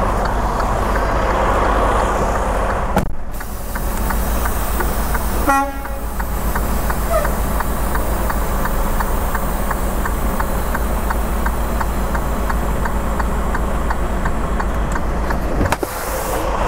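Semi-tractor's diesel engine running steadily as the truck reverses toward a trailer to couple up, with a brief horn-like toot about five and a half seconds in and a regular light ticking through the second half.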